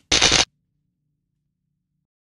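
A single short, loud burst of hissing noise, about a third of a second long, just after the start, then silence.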